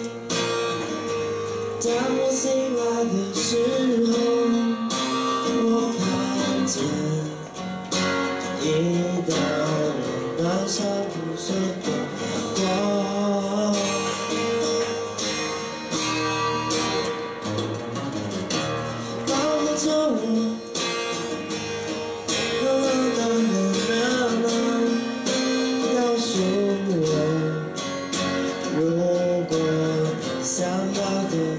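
A man singing a song to his own strummed steel-string acoustic guitar, played live into a microphone.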